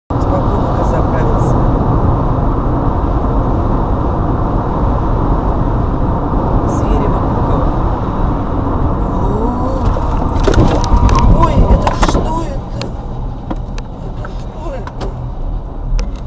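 Steady road and engine rumble inside a car cabin at highway speed. A cluster of sharp knocks and clatter comes about ten to twelve seconds in, the loudest part, after which the rumble is quieter.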